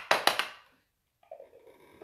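A sharp click followed by a brief scuffing, rustling handling noise that fades within about half a second.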